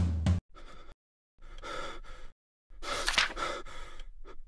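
Background music cuts off just after the start, then a person takes three long, gasping breaths with short silences between them.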